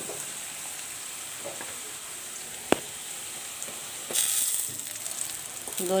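Onions, green chillies and spices sizzling in hot oil in a wide metal wok (kadai), stirred with a metal spatula. The hiss is steady, with one sharp click near the middle and a brief louder burst just after four seconds in.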